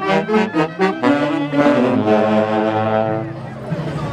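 Chonguinada dance music played by a band led by saxophones: a run of quick notes, then a long held chord that fades before the next phrase begins.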